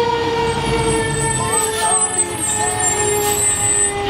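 Fire engine siren holding one long tone that slowly falls in pitch as it winds down, with faint voices beneath it.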